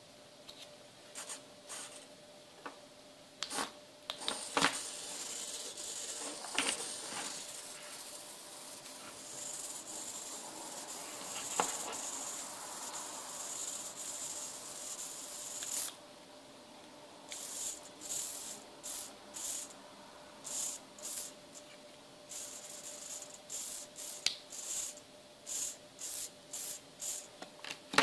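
Micro hobby servo motors whirring as a servo tester drives them. A long continuous run through the first half, then short whirs about twice a second in the second half, over a faint steady hum.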